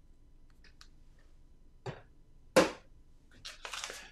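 Quiet handling sounds: a few faint clicks from a small fragrance-oil bottle being handled, a short louder swish about two and a half seconds in, then paper rustling near the end as a printed sheet is picked up.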